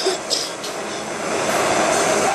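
Handheld butane jet torch burning with a steady hiss as it heats the nail of a bong for a dab.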